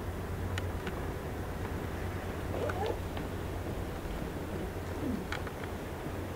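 Quiet pause of open-air background noise with a steady low hum, a few faint clicks and two brief faint calls or murmurs.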